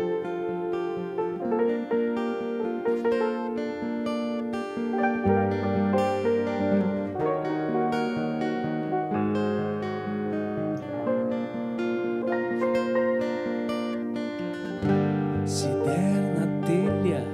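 Fingerpicked acoustic guitar playing a melodic instrumental passage, accompanied by grand piano. Deeper held notes come in about a third of the way through.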